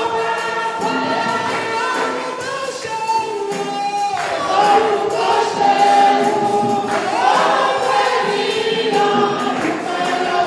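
A woman singing a gospel praise song into a microphone, holding and sliding between notes, with music and other voices singing along behind her.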